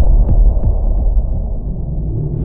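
Cinematic logo-animation sound design: a loud, deep throbbing hum with faint regular pulses, after a sharp hit right at the start.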